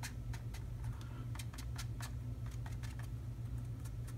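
Light, irregular clicking taps, a few a second, as a small paint sponge is dabbed along the edges of a painted monument model to sponge on a light gray edge highlight, over a steady low hum.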